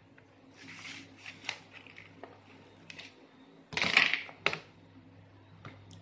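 Hands handling a boxed power bank and its cardboard and plastic packaging: scattered rustles and light clicks, with a louder rustling scrape about four seconds in followed by a sharp click.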